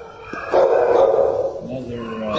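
A dog vocalising briefly at a kennel fence, starting about half a second in and lasting just under a second, with a short falling tone near the end.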